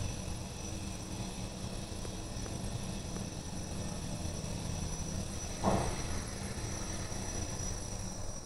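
Lift (elevator) machinery running, heard from behind closed stainless-steel doors: a steady low hum with a thin high whine. A brief whoosh comes about two-thirds of the way in.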